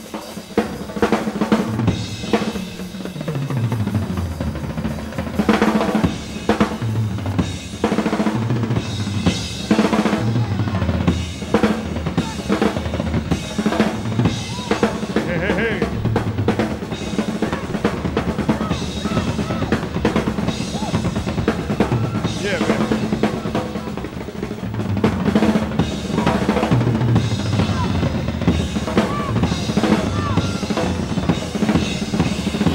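Live drum solo on a full drum kit: snare rolls and fills over bass drum strokes, played without a break. It is heard straight from a soundboard feed.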